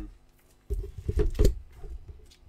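Handling noise as sheets of music and a book are moved and set down on an organ's music desk: a quick run of knocks and thumps with paper rustle, starting just under a second in.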